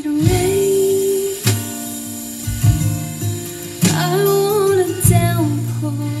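A song played through an Electro-Voice Evolve 50 powered column speaker: a singer holding long, wavering notes over strummed guitar chords, with a fresh chord struck every second or two.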